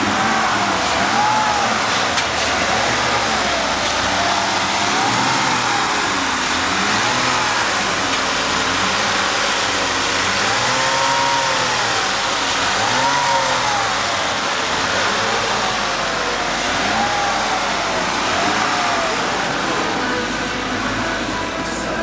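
2006 Ford Five Hundred's 3.0-litre V6 running under the open hood, its revs rising and falling again and again.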